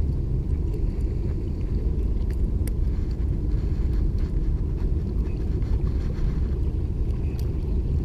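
Steady low rumble of wind buffeting the camera microphone, with a few faint clicks.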